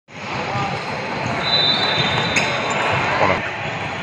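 Table tennis rally: the ball clicks sharply off the bats and the table as it is served and hit back and forth.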